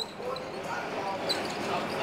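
Indistinct voices talking over the running noise of a moving streetcar, with scattered knocks and a sharp click about a second in.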